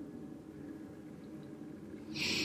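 Quiet room tone in a small room: a faint steady low hum with light hiss and no distinct events.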